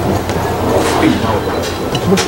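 Busy restaurant ambience: a steady low rumble under indistinct voices of other diners.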